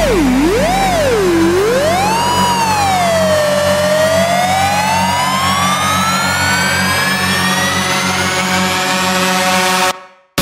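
Big-room EDM build-up: a siren-like synth whose pitch wobbles up and down, the wobble slowing until it becomes one long rising sweep over a steady low drone. It cuts off suddenly near the end, leaving a moment of silence before the drop.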